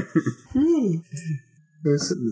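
A man laughing and making short wordless vocal sounds, one of them drawn out with a pitch that rises and then falls.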